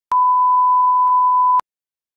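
A steady electronic test tone of one pitch, about one and a half seconds long, starting and stopping with a small click: a 1 kHz line-up tone at the head of the recording.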